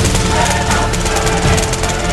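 Background music laid over a fast, steady run of clicks: airsoft rifle fire on full auto.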